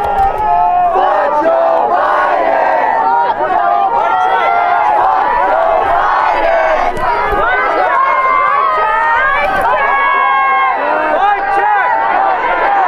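Large crowd of protesters shouting, many voices overlapping loudly and without a break.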